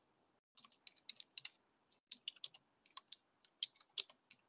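Computer keyboard typing: quick, irregular keystrokes as a message is typed into a video call's chat, picked up by the call's microphone with two brief drop-outs to silence.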